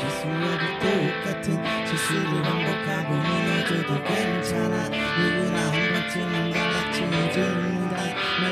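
Rock band playing live with electric guitars, electric bass and drums, an instrumental passage without singing.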